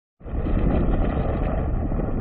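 Deep, steady rumbling sound effect for an animated logo intro, starting suddenly just after the beginning.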